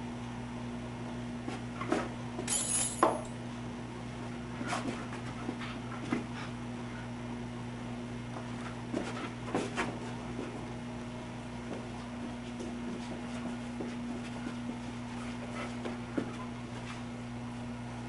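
A dog batting a golf ball about with its paws on a carpeted floor: scattered light knocks and taps, a cluster about two to three seconds in and another around nine to ten seconds, over a steady low hum.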